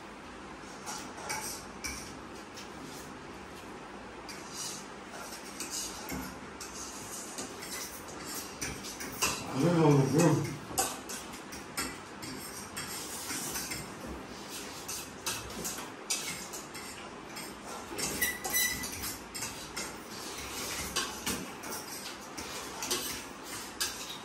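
Cutlery clinking and scraping against plates as several people eat noodles, in scattered short clicks. A brief voice sounds about ten seconds in.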